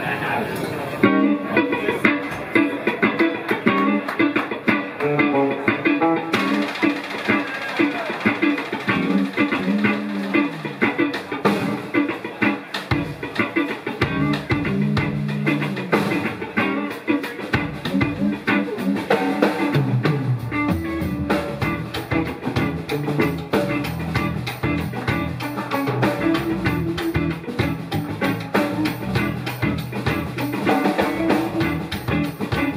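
Live instrumental band playing: two electric guitars, electric bass and a drum kit, coming in together about a second in and playing on steadily.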